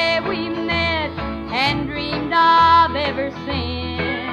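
A 1957 Nashville country record playing: a small band of guitars, bass, drums and piano, with a lead line that bends its notes and a bass walking underneath.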